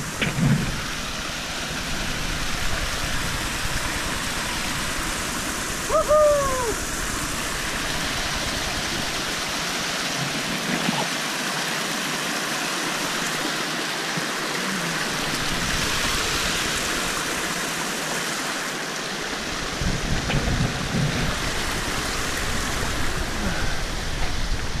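Small rocky stream rushing and tumbling over stones, a steady wash of water noise. A low rumble comes and goes underneath.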